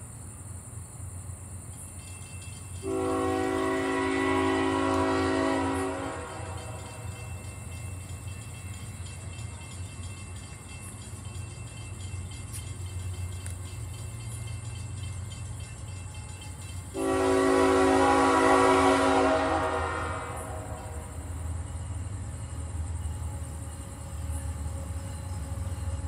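Diesel freight locomotive horn sounding two long blasts, each about three seconds and a chord of several notes, some fourteen seconds apart. A steady low rumble of the approaching train runs beneath.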